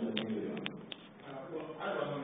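Indistinct speech in a large room that fades out in the first half second and comes back near the end, with a few sharp clicks in the first second.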